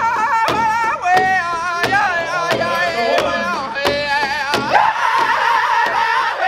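Powwow drum group singing a contest double-beat song: several high-pitched voices sing over one large drum, which many drumsticks strike together in a steady beat. The singing grows fuller about five seconds in.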